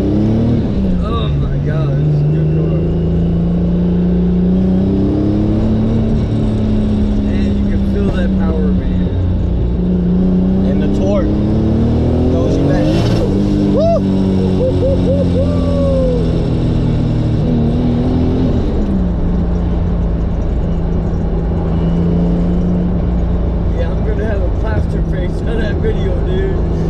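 Turbocharged 2JZ-GTE straight-six of a 1996 Lexus SC300, heard from inside the cabin, pulling hard through the gears: the revs climb, drop at a gearchange just after the start, and climb again to a peak about halfway through, where there is a sharp crack. The engine then falls away and runs at a steady cruise for the last several seconds.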